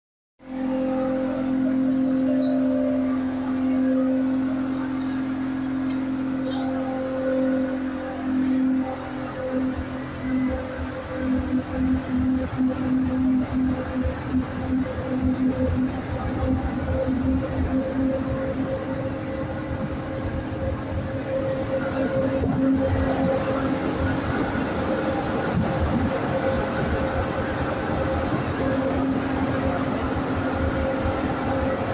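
Buenos Aires Subte Line E train heard from inside the car as it pulls out of the station: a steady electric hum, then wheels on the rails with irregular low knocking as it gathers speed. It settles into even running noise in the tunnel.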